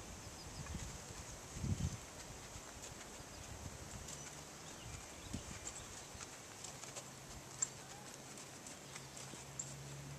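Faint hoofbeats of a ridden horse moving over sand footing, soft low thuds with a louder one about two seconds in. A sharp click comes near the end, and a faint steady low hum begins partway through.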